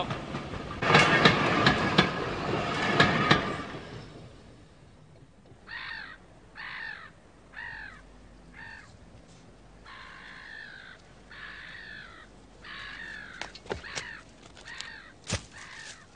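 A train running with a loud clattering rumble for the first few seconds, then crows cawing, about nine separate caws over several seconds, with a few sharp snaps near the end.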